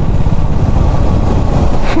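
Motorcycle engines running at road speed, with wind rushing over the microphone; a laugh comes in right at the end.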